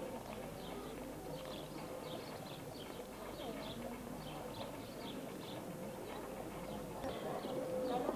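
Birds chirping in short high notes, a few a second, over a faint murmur of distant voices.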